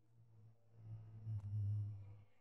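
A low steady tone, swelling up and then fading out, with one faint click about one and a half seconds in.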